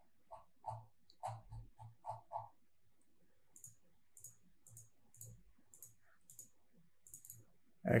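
Faint clicking of a computer keyboard and mouse. A quick run of about seven keystrokes with a dull thud comes in the first two and a half seconds, then lighter, sharper clicks about twice a second.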